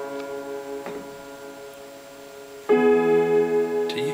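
Music with no singing: a sustained keyboard chord fades away, then a new chord is struck about two-thirds of the way in and rings on.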